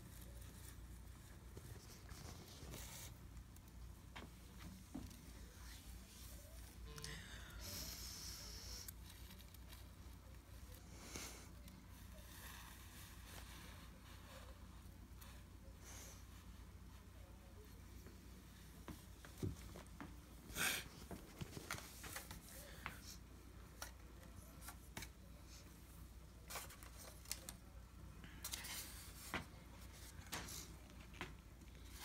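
Faint rustling and crinkling of gift wrap and styrofoam packing as they are handled, with a few sharp taps and clicks in the second half.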